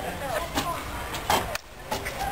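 Voices talking in the background over camera-handling noise, with one sharp knock just past the middle. The sound then drops away briefly and comes back as a steady outdoor background.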